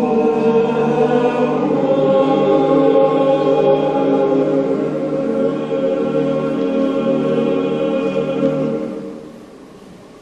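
Boys' choir singing a sacred choral piece in sustained, held chords; the singing fades out about nine seconds in, ending a phrase.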